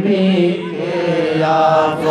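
A man singing a Bengali devotional song solo into a microphone, drawing out long held notes.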